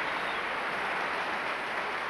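Audience applause in a large hall, a steady wash of clapping.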